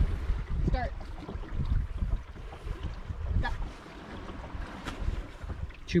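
Wind buffeting the microphone, an uneven low rumble, with a faint wash of water along the hull of a sailboat under way.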